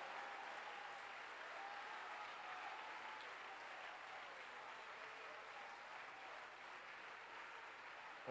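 A church congregation clapping in faint, steady applause in answer to a call for a hand of praise.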